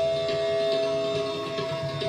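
Bansuri bamboo flute holding one long steady note in raga Marwa, with tabla playing softly beneath.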